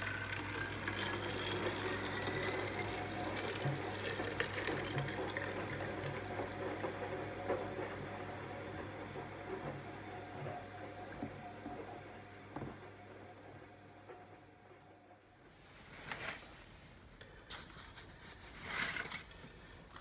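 Water poured from a plastic jug into a plastic bottle, rising in pitch as the bottle fills, then fading away over the next ten seconds or so. A few short knocks come near the end.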